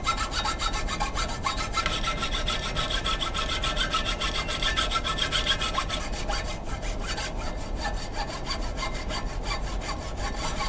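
Hand saw cutting through a bark-covered log in continuous, quick back-and-forth rasping strokes.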